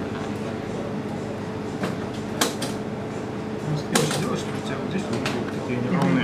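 A few sharp clicks and snaps, the loudest about two and a half and four seconds in, from hands working the wires of a twisted-pair cable end, over an indistinct murmur of voices and a steady hum.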